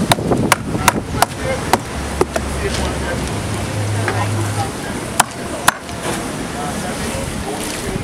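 Large knife chopping through a mahi mahi onto a wooden cutting board: a quick run of sharp knocks in the first two and a half seconds, then two more a little after five seconds.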